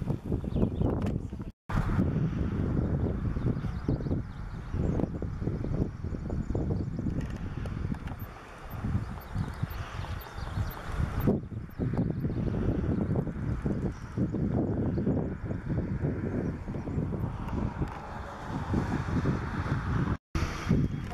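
Wind buffeting the camera's microphone outdoors: a gusting, rumbling noise that rises and falls, cut off briefly twice by edits.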